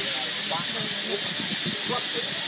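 Indistinct chatter of people in the background over a steady, high-pitched hiss.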